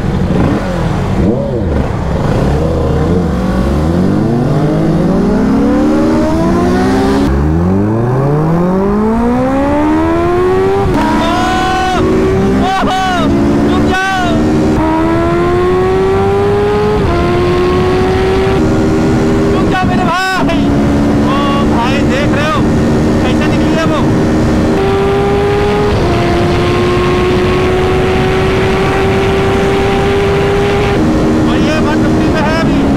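Sport motorcycle engine accelerating hard from a standstill, rising in pitch through several upshifts, then running steadily at high speed with wind rushing past.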